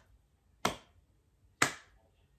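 One person's slow hand claps, two sharp claps about a second apart in an even beat: sarcastic slow applause.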